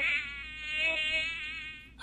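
Buzzing fly sound effect from the fruit fly simulator software, a steady buzz whose pitch wavers slightly, fading out near the end.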